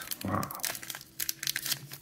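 Crinkling and rustling of a shiny foil trading-card pack worked in the hands as someone tries to tear it open. The tightly sealed wrapper won't give.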